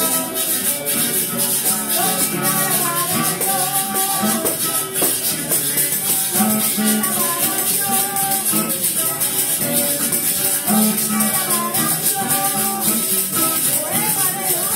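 Amplified Puerto Rican cuatro playing a lively plucked melody, with a shaker keeping a steady rhythm underneath.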